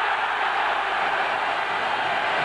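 Football stadium crowd cheering loudly and steadily just after the home side scores a goal.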